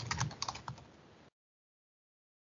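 Typing on a computer keyboard: a quick run of keystroke clicks that cuts off abruptly to dead silence a little over a second in.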